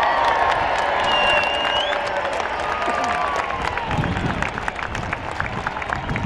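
Large stadium crowd cheering and clapping steadily, with scattered shouts and whistles, in answer to a call to cheer for the home team.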